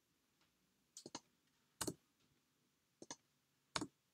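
Faint, sparse clicks of a computer mouse and keyboard during text editing. There are six short sharp clicks: a close pair about a second in and a single click soon after, then the same pattern again about three seconds in.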